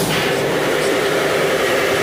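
Workshop machinery running steadily and loudly: a hum under a wide hiss.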